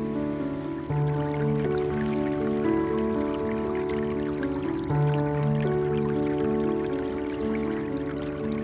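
Calm background music: a held low note that changes about every four seconds under a slow pattern of shorter, higher notes.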